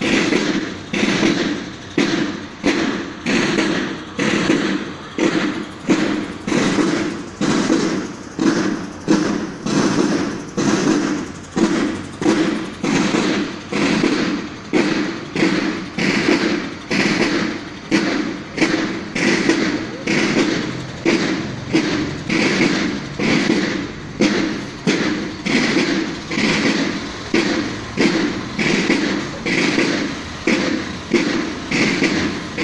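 Drums of a military drum-and-bugle band beating a steady march cadence, about one and a half strokes a second.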